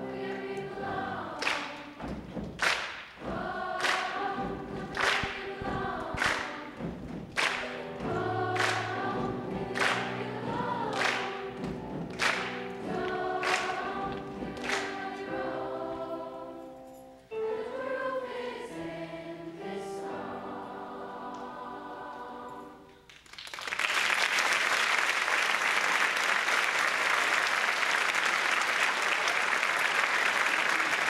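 Youth choir singing, with sharp accents about every second, ending on a held chord; about 23 seconds in, the audience breaks into steady applause.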